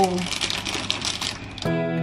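Oil crackling and hissing in a frying pan on the stove, with fine clicks, cut off about one and a half seconds in by gentle guitar music.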